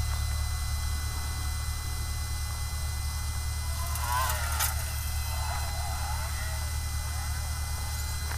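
Steady low electrical hum from a heated LCD separator machine, with a brief scratchy rustle and a sharp click about four seconds in and lighter scratching a second or two later as the cutting wire is handled.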